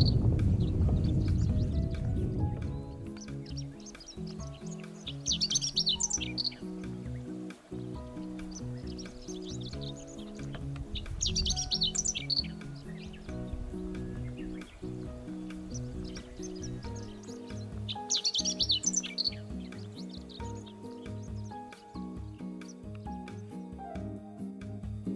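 Chestnut-eared bunting singing: three short, high-pitched song phrases about six seconds apart. Soft background music runs underneath, with a low rumble fading over the first two seconds.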